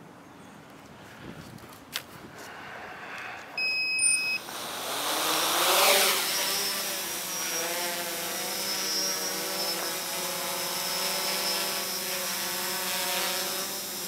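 Quadcopter on SimonK-flashed speed controllers: a short electronic beep about four seconds in, then its four brushless motors and propellers spin up with a rising whine and settle into a steady hover. It flies on raised stabilisation gains, holding a hover without shake or wobble.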